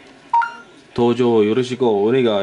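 A Samsung Galaxy S4's short voice-input start beep, a single tone about a third of a second in, signalling that the translator app's microphone is listening. A voice then speaks loudly from about a second in to the end.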